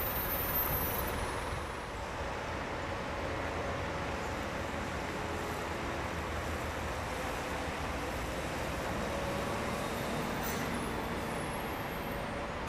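Diesel city bus engine running as the bus drives up to the stop, over steady road noise.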